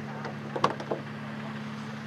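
A steady low machine hum, with a few light clicks in the first second as the Porsche 356C's door latch is released and the door is swung open.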